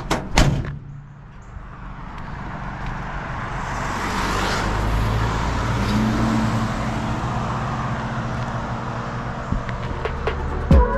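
The steel cab door of a 1966 Chevrolet C20 pickup slams shut once, about half a second in. After it, a vehicle's road noise swells over a few seconds and stays up, with a low rumble.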